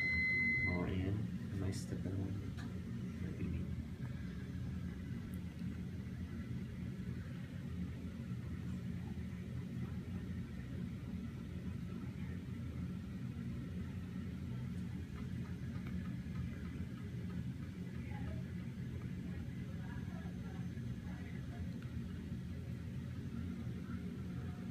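Steady low room hum, with a single electronic beep about a second long right at the start.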